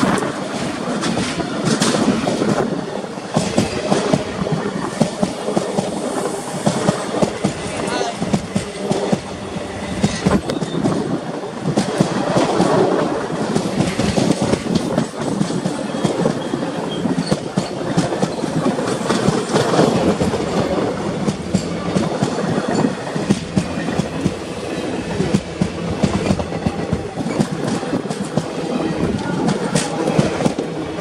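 Express passenger train's coaches running past at speed close to the track, wheels clattering over rail joints with a continuous stream of sharp clicks over a steady rushing noise.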